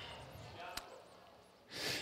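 Faint, distant voices murmuring, then a short, sharp breath into a handheld microphone near the end.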